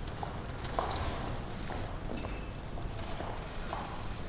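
Hard-soled shoes stepping on stone steps: irregular clicks over a steady outdoor hum.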